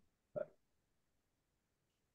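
Near silence, broken once, about a third of a second in, by a single short vocal sound from a person.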